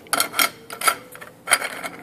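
A few light metallic clicks and clinks as a steel tap and an aluminium tube are handled and fitted together, the sharpest about one and a half seconds in, over a faint steady hum.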